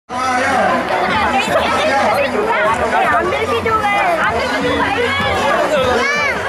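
Crowd chatter: many people talking at once, their voices overlapping throughout.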